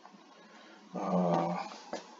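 A man's voice making a short drawn-out hum or hesitation sound about a second in, the kind of 'hmm' or 'uh' made while working out a number.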